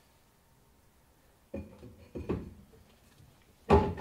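A VW Golf 3's rear brake drum being set back onto its greased axle stub: two short clunks about a second and a half and two seconds in, then a louder knock near the end.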